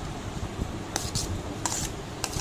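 A metal spoon scraping and clinking against a bowl as chopped papaya is scooped and dropped into the fruit salad, with a couple of short clinks about a second in and near the end.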